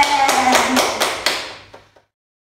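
Two people clapping hands in a steady rhythm, about four claps a second, under a drawn-out vocal cheer of "yeah" that slowly falls in pitch. Everything fades out shortly before the end.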